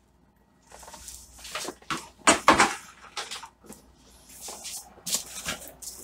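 Irregular clunks and clatter of stacked plastic plant pots and a plastic tray being handled and moved, loudest a couple of seconds in.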